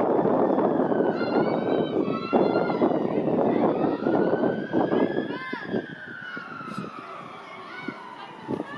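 A rush of outdoor noise for the first two seconds or so, then a siren wailing, its pitch slowly rising and falling over several seconds.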